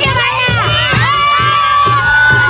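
A crowd of children shouting and cheering together, their high voices overlapping, over a steady low beat of about three strokes a second.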